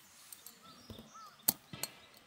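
Sharp metal clicks from a small gas lantern's wire mesh guard and fittings being handled, two close together about a second and a half in, with a few lighter ticks before. Faint bird calls sound behind them.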